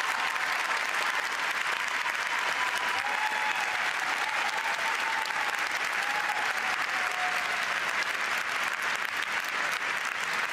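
Arena audience applauding steadily after an ice dance performance.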